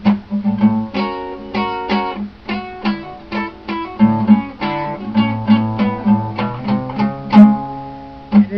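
Acoustic guitar strummed in a steady rhythm of chords, about three strums a second, with no singing.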